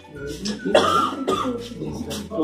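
A man's voice: short vocal sounds with a sharp, cough-like burst about three-quarters of a second in.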